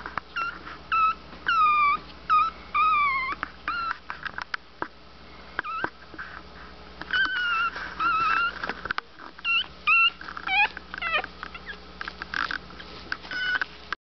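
Very young Morkie puppies whimpering: a string of short, high-pitched cries, many sliding down in pitch, coming in bursts with brief pauses between them.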